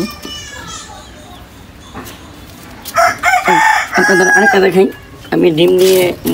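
A rooster crows once: a single long call of about two seconds, starting about halfway through.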